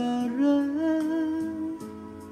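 A man's voice holds one long sung note over karaoke backing music. The note wavers slightly in pitch and fades out near the end.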